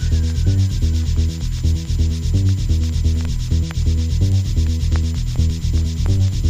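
Instrumental stretch of a 1990 UK hardcore techno track from a 12-inch record. A synth bassline plays short repeated notes under a fast, even run of hissing hi-hat-like percussion; no vocal sample comes in here.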